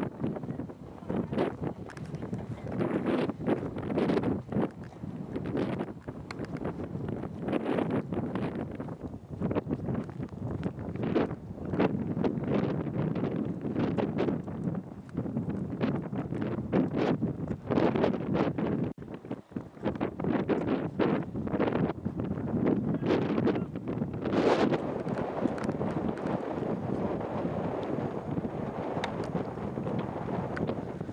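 Gusty wind buffeting the microphone in uneven surges, with scattered short knocks.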